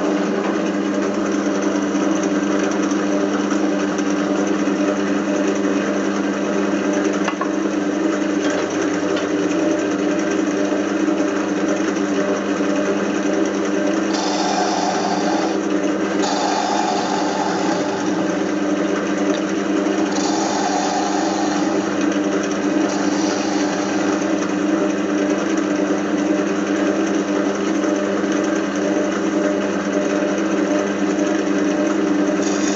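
Wood lathe running with a steady motor hum while a high-speed steel turning tool cuts a spinning beech blank. In the middle there are four brief, higher-pitched cutting passes, each a second or two long.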